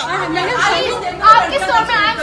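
Overlapping voices: several people talking over one another at once.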